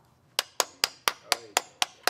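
Hand clapping in a quick, steady rhythm, about four sharp claps a second, starting just after the singing stops.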